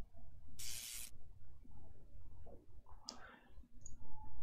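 A short hissing puff on the close microphone about half a second in, like breath, then a few faint clicks near the end over a low steady hum.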